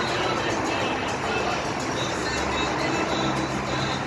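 Background music playing over a steady wash of road traffic noise.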